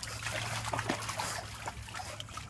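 Shallow water in a plastic paddling pool trickling and lightly splashing in small irregular splashes as a pug wades and noses at a toy in it.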